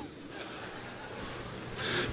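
A preacher's sharp inhaled breath into a handheld microphone near the end, before he speaks again. Steady low hiss from the microphone fills the pause before it.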